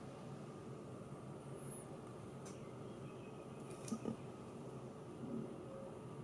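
Quiet room tone with a few faint taps of fingertips on smartphone touchscreens, about two and a half seconds in and again near four seconds.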